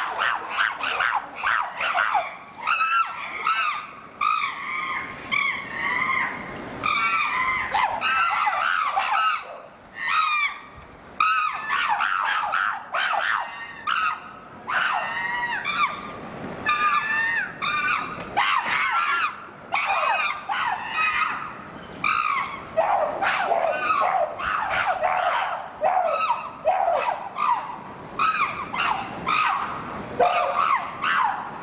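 A chimpanzee troop screaming and calling over one another in a dense, continuous commotion, many high shrill cries overlapping, stirred up by chasing among the group.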